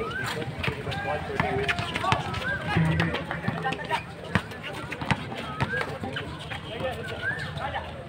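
Basketball game on an outdoor hard court: the ball bouncing and players running, with many short sharp knocks, while players and onlookers call out.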